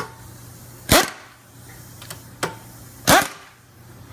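Air impact wrench, set light, snugging up the half-inch housing bolts in two short bursts about two seconds apart, with a few lighter clicks between.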